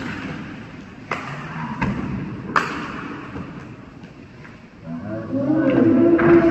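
Two sharp thuds of a basketball, about one and a half seconds apart, echoing in a large covered court. A loud, long, drawn-out shout begins near the end.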